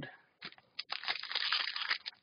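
Foil wrapper of a hockey card pack crinkling and tearing as it is opened by hand: a short click, then about a second of dense crinkling near the end.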